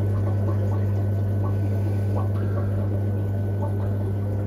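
Aquarium filter running: a steady low hum with faint watery trickling.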